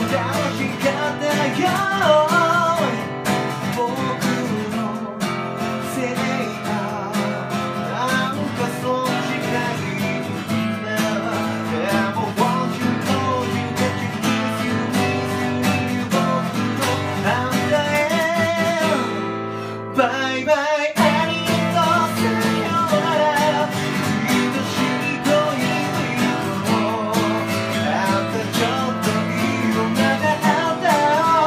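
A man singing a Japanese pop song while strumming an acoustic guitar, with a brief break about two-thirds of the way through.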